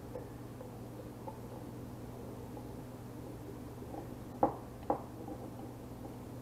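A metal utensil clinking twice against a glass jar, about half a second apart, over a low steady hum, as jalapeño slices are fished out of the jar.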